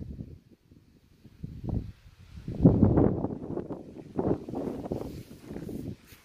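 Wind buffeting a phone's microphone in irregular gusts of low rumble, the strongest about three seconds in.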